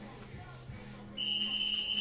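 Gym interval timer sounding one long, high electronic beep, starting a little past halfway, that marks the start of the next 25-second work interval after a 10-second rest.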